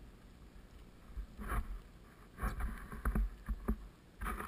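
Jacket fabric rustling and a few sharp knocks close to the board-mounted camera as a jacket is pulled off and dropped onto the snow by the board. It is faint for about the first second, with the rustling and knocks coming in the second half.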